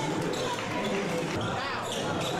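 Basketball game sound in a gym: steady crowd chatter with a ball bouncing on the hardwood court.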